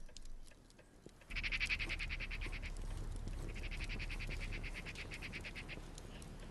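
An animal's rapid trilling call, heard twice, each trill lasting a second or two, over a low steady background rumble.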